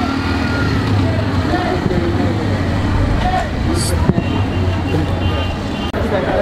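Street background: people talking over a steady low engine hum, with a brief hiss a little before the four-second mark.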